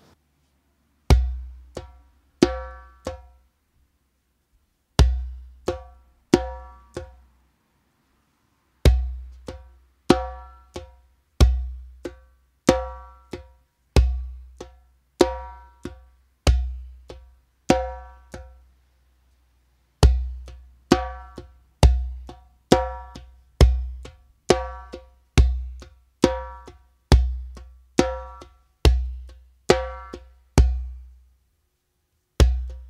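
Remo djembe played by hand: a beginner rhythm of a deep bass stroke followed by three slaps, left, RIGHT, left, with the right-hand slap loud and the left-hand slaps quiet. It starts about a second in as short phrases with pauses, then runs on as a steady repeating pattern from about 9 seconds, with a brief break near 19 seconds.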